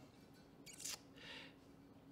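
Near silence: room tone, with a short faint rustle about a second in.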